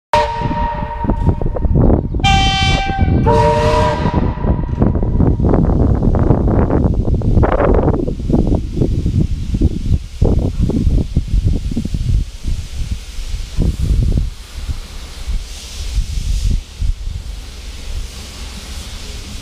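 Narrow-gauge steam locomotive whistle sounding three short blasts in quick succession over the first four seconds, each on a somewhat different chord. A loud, uneven rumble follows and dies away by about fourteen seconds, leaving a faint hiss.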